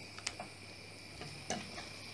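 Wooden spatula stirring a thick tomato-chili sambal in a stainless steel pot, with a few light taps of the spatula against the metal, about three in two seconds.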